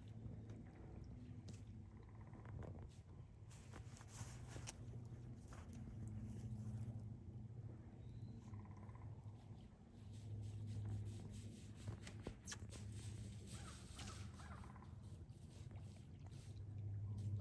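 Faint, quiet outdoor ambience: a steady low hum with scattered small clicks and cracks.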